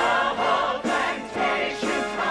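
A musical-theatre cast singing together in full chorus over orchestral accompaniment.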